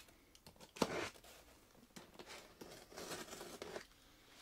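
Faint handling noises from a cardboard shipping box: light scraping and rustling, with a sharper knock about a second in.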